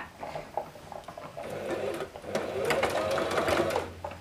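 Brother domestic electric sewing machine stitching at the start of a seam, back tacking to secure the stitch. It gives a few scattered ticks at first, then runs fast from about a second and a half in, with a brief break just past halfway, and stops just before the end.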